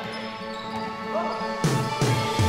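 Pop music playing, with a sudden hit about a second and a half in.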